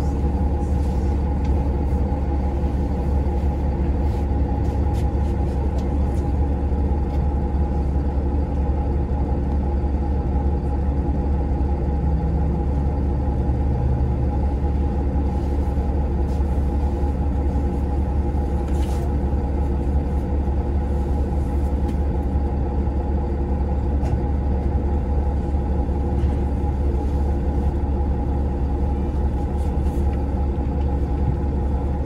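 City transit bus engine idling while the bus stands still, heard from inside the passenger cabin: a steady low rumble with an even hum above it.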